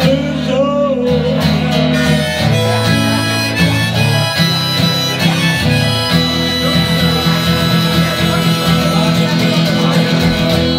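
Live acoustic guitar strummed in chords under a harmonica playing held, wailing notes: an instrumental passage of a song.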